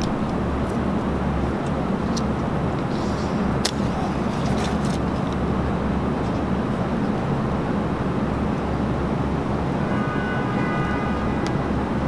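Steady city traffic noise: a constant rumble and hiss of road vehicles. A single sharp click comes about four seconds in, and faint high tones sound near the end.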